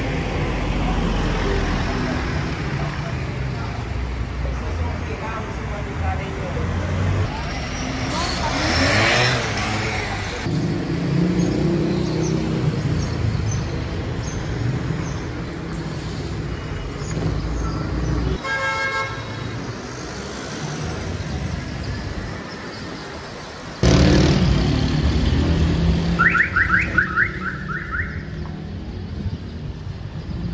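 Urban street traffic: a steady rumble of passing cars, with a brief car horn toot about midway and a quick run of high chirps near the end.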